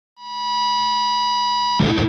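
A steady, high electronic tone with overtones opens the soundtrack. It fades in over about half a second and holds, then is broken off near the end by a short burst of noise.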